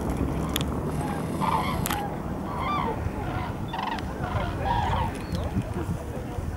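Common cranes calling in flight: a string of short calls, about two a second, starting about a second and a half in, over a low steady rumble.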